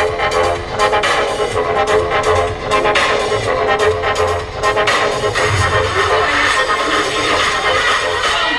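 Electronic dance music with a steady beat.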